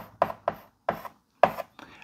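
Chalk writing on a blackboard: about five short taps and strokes as characters are written, with quiet between them.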